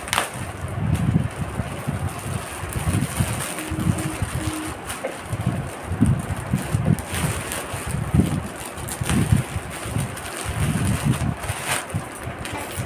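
Clear plastic packaging crinkling and rustling in irregular bursts as a bag is pulled open by hand, with a few sharp clicks.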